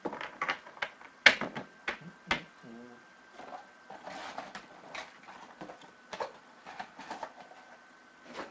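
Trading-card packs and cards being handled and opened: an irregular run of sharp clicks, taps and crinkles, loudest about a second in, over a faint steady high whine.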